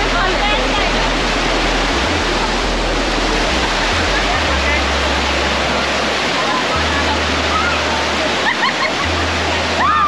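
Water rushing steadily down a shallow rock-slope cascade, with people's voices and a few high cries over it near the end.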